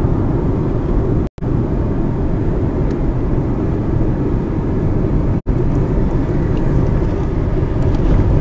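Steady low rumble of engine and tyre noise heard inside a moving car's cabin. The sound cuts out for a moment twice.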